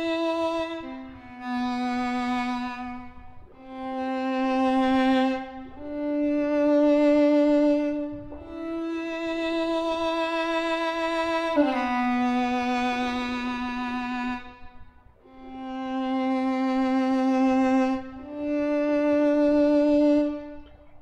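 Sampled solo violin from Native Instruments' Cremona Quartet Guarneri Violin, in virtuoso mode, playing a slow melody of long bowed notes with vibrato. Each note swells and fades as the mod wheel shapes its dynamics. There are about eight notes of two to three seconds each, with a short gap about three-quarters of the way through.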